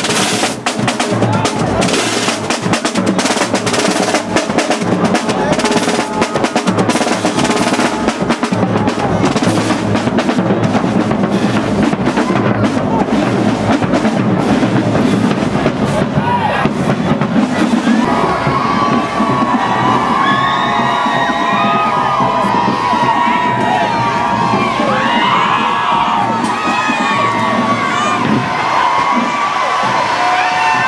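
A marching band's drums and crash cymbals play a fast, loud beat as the band passes. A little past halfway the drumming falls away, and a crowd shouting and cheering takes over.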